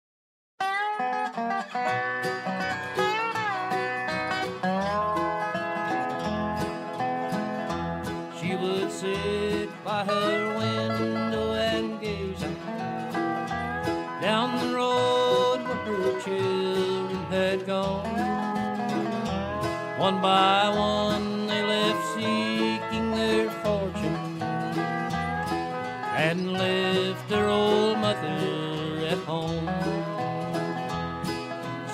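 Acoustic bluegrass band playing an instrumental introduction from a vinyl record. It starts about half a second in, after a brief silence between tracks. Sliding lead notes play over strummed guitar and an evenly pulsed string bass.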